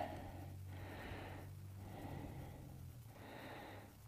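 Faint breathing close to the microphone, a few soft breaths about a second and a half apart, over a low steady hum.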